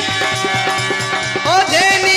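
Rajasthani folk bhajan music: a quick hand-drum beat under steady held melodic notes, with a pitched line gliding upward into a sustained note about a second and a half in.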